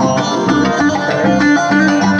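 Live Turkish folk dance tune (oyun havası) played on a Yamaha Genos arranger keyboard over its steady drum rhythm, with a plucked string instrument.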